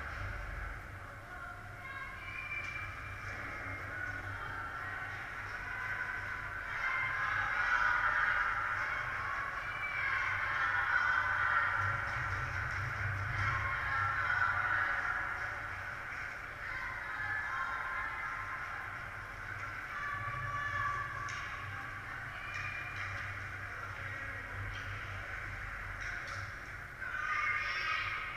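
Echoing indoor ice-rink sound during a youth hockey game: many overlapping voices of players and spectators calling out, louder for several seconds in the middle, over a steady low rumble. A few sharp clicks of sticks and puck come through, one near the end.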